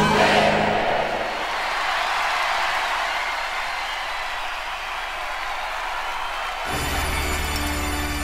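Live-concert audience cheering and applauding between songs on a live album played from vinyl, a steady even roar after the music fades in the first second. Near the end the band starts the next song, with strong bass notes.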